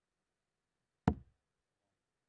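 A steel-tip dart thudding into a Winmau bristle dartboard: one sharp impact about a second in.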